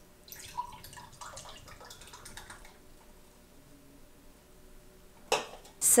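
Canned coffee poured into a ceramic mug: liquid trickling and dripping into the cup, dying away about three seconds in.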